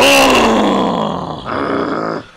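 A person's voice making a loud, rough groan that starts suddenly and falls in pitch over about a second and a half, then trails off more quietly.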